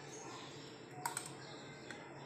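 A spoon clicking against the dishes as custard is spooned into trifle glasses: two quick clicks about a second in and a fainter one near the end.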